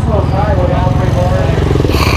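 Kawasaki KX500 two-stroke single-cylinder engine running steadily, its firing pulses even throughout, with voices over it.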